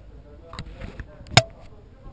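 A single sharp click or knock about a second and a half in, much louder than anything else, with a short rustle half a second before it.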